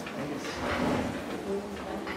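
Faint murmur of voices and small shuffling noises in a quiet hall, with one short faint pitched note about one and a half seconds in.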